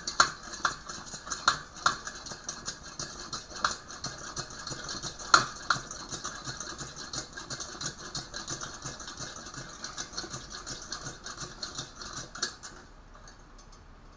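Hand air pump of a 1946 Coleman 220C pressure lantern being stroked rapidly, about three clicking strokes a second, pumping air into the fuel font to pressurize it (about 40 strokes in all). The pumping stops a little before the end.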